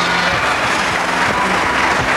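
Studio audience applauding, a steady sustained clapping that fills the room.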